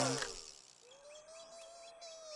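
A cartoon sound effect falling in pitch fades out in the first half second. It gives way to faint jungle ambience: a steady, slightly wavering high tone with bird chirps over it.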